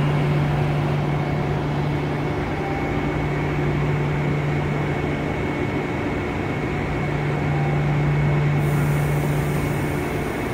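Steady low hum and drone of a KTX high-speed train alongside the platform, with a thin high whine running through it. A faint high hiss comes in near the end.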